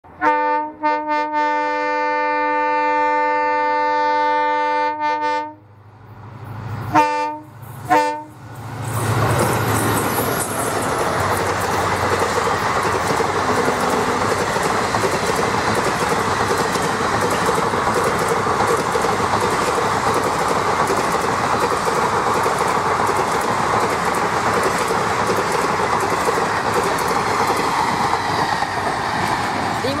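WDP4D diesel locomotive's multi-tone air horn: a long blast of about five seconds that starts in short stutters, then two short blasts. The train then passes at high speed, its coaches rushing over the rails with steady wheel clatter.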